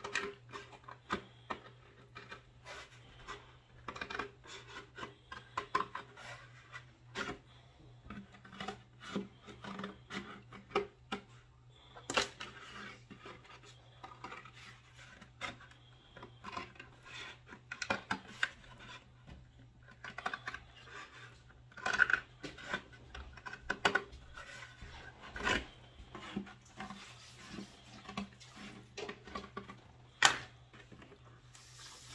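Scissors cutting through a stiff paper-mache hat box: irregular crunching snips, with the cardboard rubbing and rustling as the box is turned. The loudest snips come about 12, 22 and 25 seconds in.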